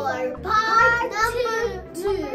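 A young girl's voice singing over background music with a steady beat.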